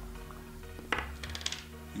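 Plastic screw lid of a Golden acrylic gel jar being twisted off and set down: one sharp click about a second in, then a quick run of lighter clicks, over soft background music.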